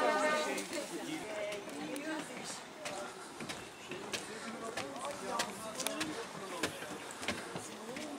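Indistinct chatter of a group of hikers, with scattered sharp taps of footsteps climbing wooden bridge steps.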